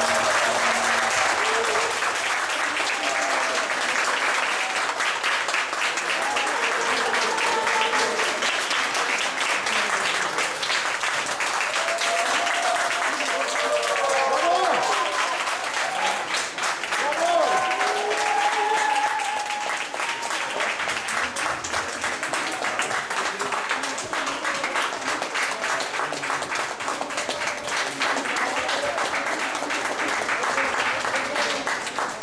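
An audience applauding steadily after a live tango performance, with cheers and shouted calls mixed in. The applause eases a little about two-thirds of the way through.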